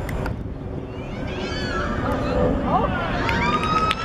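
Young players' voices shouting and calling during football play, over a steady low rumble.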